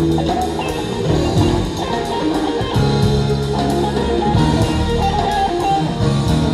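A rock band playing live, an instrumental passage with no singing: electric guitar lines over a drum kit and bass.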